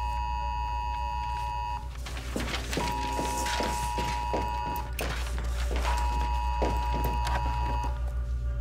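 A phone's emergency alert tone: three long, steady beeps of about two seconds each, a second apart. Knocks and rustling sound between the beeps, over a low steady drone.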